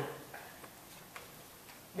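Quiet room tone in a hall during a pause in speech, with a few faint, scattered ticks.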